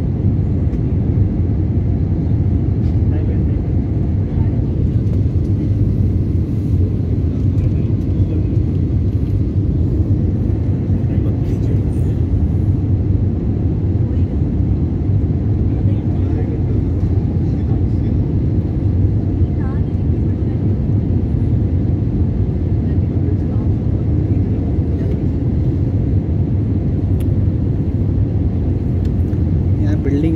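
Steady low drone of an airliner cabin in flight: engine and airflow noise heard from inside the aircraft, unchanging throughout.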